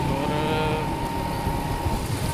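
A Honda motorcycle running slowly on a wet road, with a steady high-pitched tone held for nearly two seconds over the engine and road noise.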